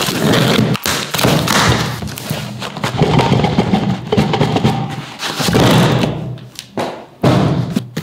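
Cardboard parcel being unpacked: scissors cutting packing tape, tape tearing, and the box and its flaps handled with repeated thumps and scrapes.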